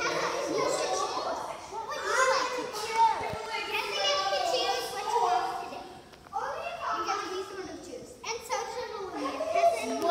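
Children's voices: several kids talking and calling out excitedly over one another while they play.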